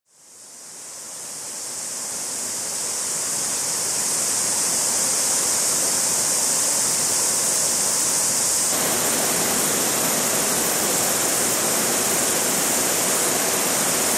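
Shallow stream rushing over rocks in rapids, a steady hiss of running water that fades in over the first few seconds and grows fuller about nine seconds in.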